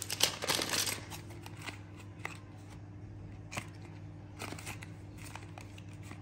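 Cardboard medicine boxes and foil blister packs being handled and shuffled in a plastic basket: a burst of rustling and clatter in the first second, then scattered light clicks and taps. A low steady hum runs underneath.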